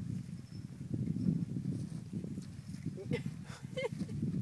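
Young male camels moving about: irregular footfalls and shuffling, with a short pitched sound near the end.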